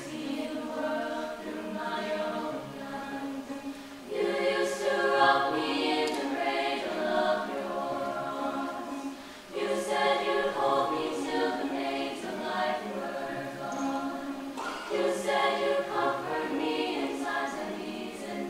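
Mixed-voice chamber choir singing a cappella in sustained chords, with fuller, louder phrases coming in about four, nine and a half, and fifteen seconds in.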